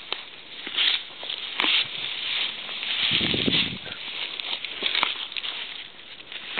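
A horse sniffing close up in a series of short noisy breaths, with dry straw rustling.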